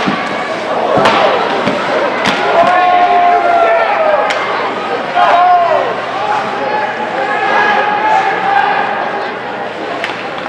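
Ice hockey play: sharp clacks of sticks, puck and boards, about four in the first half, with voices shouting and calling out, one long drawn-out yell among them.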